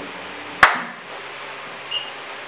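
A single sharp knock about half a second in, with a short ring after it, over faint steady room hiss; a brief high tone near the end.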